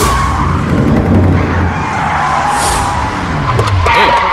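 An SUV drives in and brakes to a stop, its engine note falling as it slows. A tyre skid comes near the end.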